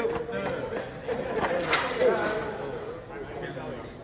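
Feet of the bipedal humanoid robot ARTEMIS striking a hard stone floor as it walks, under voices chattering in a large hall, with one sharper knock a little before the midpoint.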